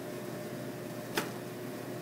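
Steady hum of room ventilation or air conditioning, with one short sharp click about a second in.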